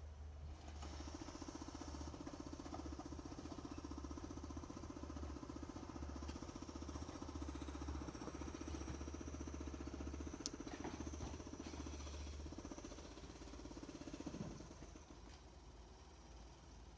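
Garbage truck's engine and hydraulics working at the curb: a steady rumble with a fast, even pulsing and a thin high whine that set in about a second in and die away shortly before the end. One sharp click comes about two-thirds of the way through.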